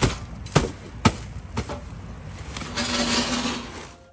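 Plastic stretch wrap being pulled off a crated machine: four sharp snaps about half a second apart, then a stretch of crinkling and rustling near the end.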